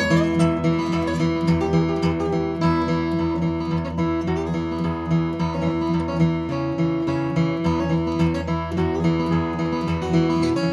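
Steel-string acoustic guitar played fingerstyle with a thumbpick: a steady instrumental tune of picked melody notes over a moving bass line.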